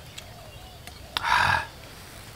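A chicken squawking once, short and loud, a little past halfway, with fainter calls before it.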